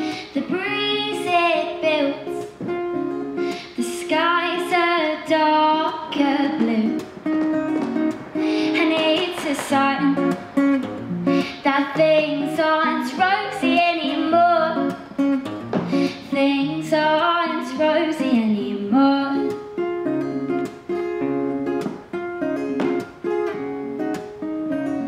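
A woman singing a folk-country song to her own acoustic guitar accompaniment. The singing stops about five seconds before the end, leaving the guitar playing alone.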